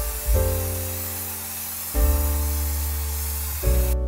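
Aerosol spray-paint can hissing steadily as paint is sprayed onto a canvas, under background music of slow sustained chords. The hiss cuts off abruptly near the end.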